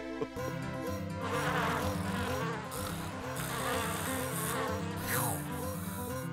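Cartoon sound effect of a housefly buzzing, starting about a second in, over background music with a stepping bass line.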